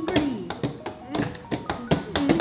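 Repeated sharp clicks and taps of a clear rigid plastic toy package being handled and pried open to free a small plastic figure.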